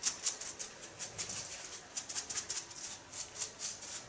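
A flat hairdressing brush stroked quickly over the hair and skin at the nape, cleaning it up, making a run of short, light swishes a few times a second.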